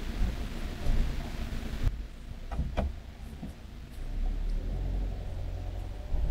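Motorhome driving slowly, a low engine and road rumble in the cab. A hiss over it cuts off about two seconds in, followed by a couple of light clicks, and the rumble swells again later.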